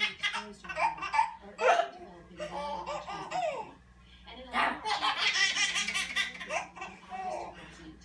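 A woman and a baby laughing, with the loudest bouts at the start and again around the middle, and short higher squeals in between.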